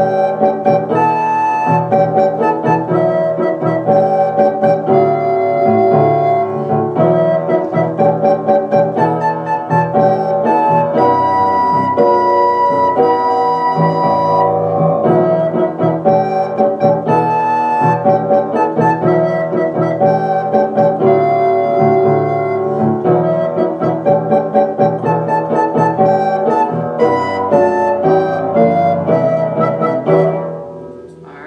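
Soprano recorder playing a slow beginner's tune on the notes E, G and A, with held notes, over a recorded keyboard accompaniment of organ- and piano-like chords and bass.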